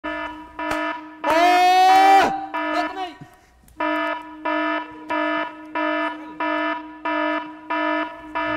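Electronic alarm beeping in a steady repeating pattern, about three short beeps every two seconds. A loud rising shout cuts across it about a second and a half in.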